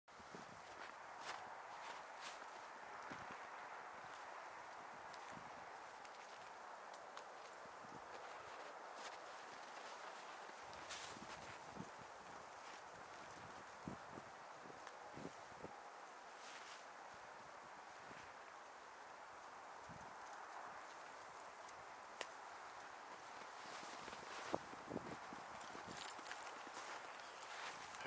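Faint scattered crunches and knocks of footsteps and movement in snow over a steady outdoor hiss, busier near the end.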